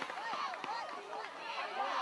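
Faint, overlapping voices of spectators and players calling out across a football field, with no single close voice.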